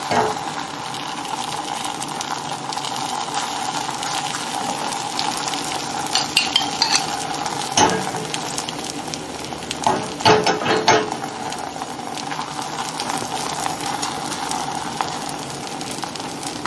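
A tortilla sizzling steadily in butter in a hot stainless steel frying pan, while a metal spoon spreads sauce over it. The spoon scrapes and clinks against the pan in short bursts about six seconds in, near eight seconds, and again around ten to eleven seconds.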